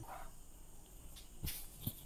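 Quiet room tone with a few faint clicks and knocks, about one and a half seconds in and again near the end, as a person shifts into position.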